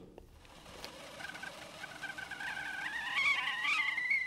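Stovetop whistling kettle with a brass pipe whistle coming to the boil on a gas burner: about a second in, its whistle starts faintly, then rises slowly in pitch and grows louder.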